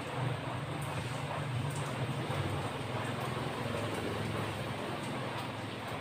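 Steady low background rumble and hum, with a few faint ticks.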